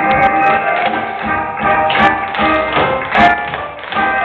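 Tap dancing by a group of dancers, the metal taps on their shoes striking the stage floor in quick clusters over instrumental music.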